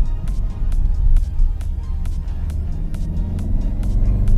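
Background music with a steady beat, about two beats a second, over the low drone of the VW Golf R's turbocharged four-cylinder engine and exhaust as the car drives in race mode.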